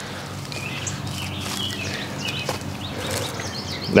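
Outdoor yard ambience: birds chirping now and then over a steady low hum.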